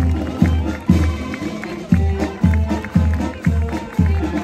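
Brass marching band playing a march, the bass drum striking about twice a second under the horns.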